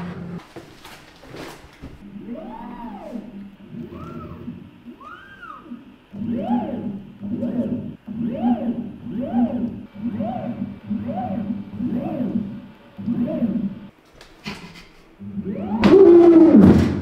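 Stepper motors driving the joints of a robotic arm through cycloidal gearboxes, each move giving a whine that rises and then falls in pitch over a steady low hum. There are a few slower sweeps first, then about eight shorter ones roughly a second apart.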